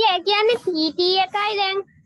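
A high-pitched young voice talking in loud, drawn-out, sing-song syllables, stopping shortly before the end.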